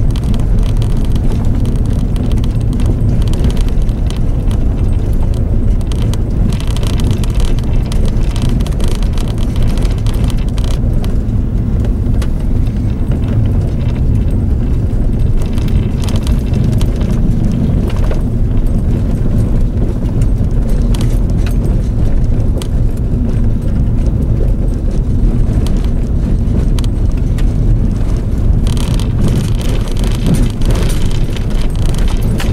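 Inside the cabin of a Jeep driving on a gravel road: steady engine and road rumble, with tyres on the gravel and frequent small rattles and clicks.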